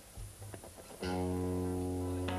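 A live ska band starts a song about a second in: a loud held chord with a strong low bass note under it, after a moment of low stage and room noise.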